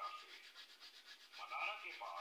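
Hands rubbing and scratching through hair: a quick, rhythmic scratchy rubbing.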